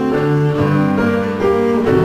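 Cello playing a bowed melodic line with piano accompaniment, moving from note to note several times a second.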